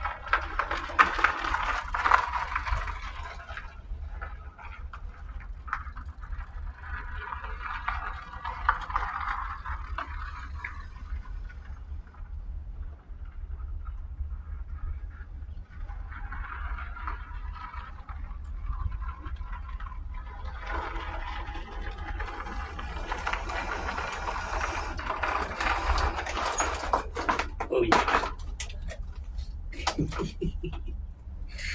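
Fat-tyre electric bike riding around on gravel, its sound swelling and fading as it passes near and away, over a steady low wind rumble on the microphone. A few sharp clicks come near the end as the rider comes up close.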